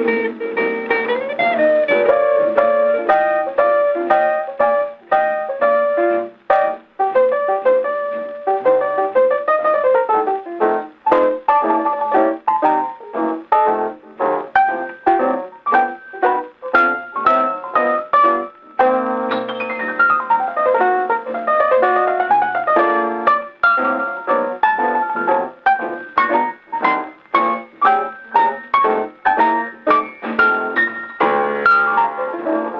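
Acoustic Victrola phonograph playing a shellac record: an instrumental passage with piano to the fore and no singing. The sound is thin and narrow, with no deep bass and no sparkle on top.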